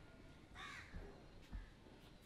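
Near silence, with one faint bird call, like a crow's caw, about half a second in and a faint low bump about a second and a half in.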